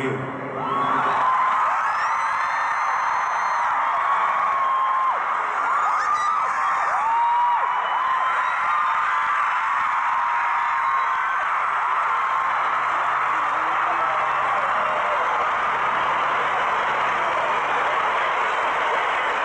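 A stadium crowd of fans screaming and cheering steadily, with many individual high-pitched screams standing out from the mass.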